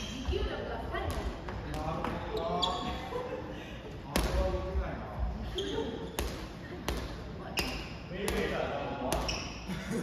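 Soft volleyball rally in an echoing gymnasium: repeated slaps of hands and forearms hitting the soft ball, sneakers squeaking on the wooden floor, and players calling out between hits.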